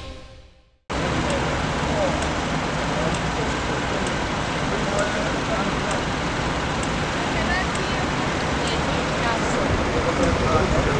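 Intro theme music fading out, then after a moment of silence a steady roadside noise of traffic, with people talking in the background.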